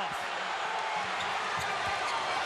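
Arena crowd noise with a basketball being dribbled on the hardwood court, a few bounces in the second half.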